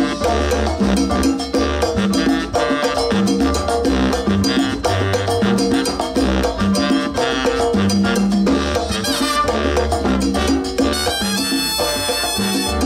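Live salsa orchestra playing an instrumental passage between vocal lines: horns over a steady bass line and percussion including timbales.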